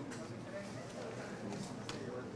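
Faint murmur of voices in a hall, broken by a few sharp clicks: one just after the start and a stronger one near the end.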